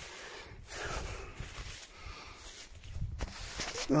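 Footsteps and the rustle of vegetation as a person walks through nettles, an uneven scuffing noise with a few brief pauses.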